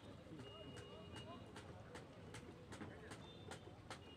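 Faint, distant voices over the water, with a regular light clicking about two to three times a second.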